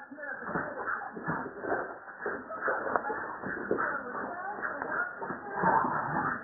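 Staffordshire bull terrier playing rough with another dog: continuous scuffling with rapid, irregular clicks and scrapes.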